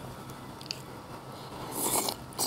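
Low steady background, then near the end a short breathy hiss from the mouth as a person leans in to bite a piece of fish cake held on chopsticks.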